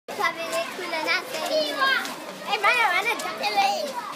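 Schoolchildren's voices: several children talking and calling out at once, high-pitched and overlapping, with no clear words.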